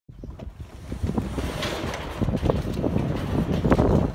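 A sectional garage door being pushed up by hand, rattling and clunking irregularly as it rolls open.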